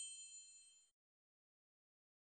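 Near silence: the faint tail of a high, bell-like ring fades out in the first second, then the sound cuts to complete silence.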